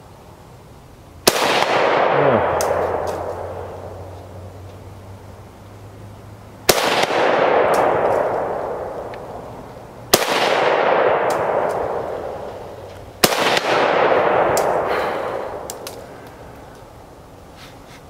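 Arsenal SAM 7 SF rifle in 7.62x39 firing four deliberate single shots a few seconds apart. Each sharp report is followed by a long echo that rolls away over two to three seconds.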